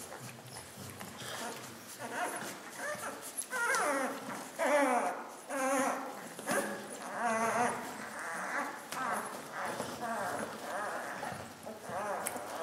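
Twelve-day-old puppies giving a run of short, high, wavering whines while they suckle, loudest in the middle of the stretch.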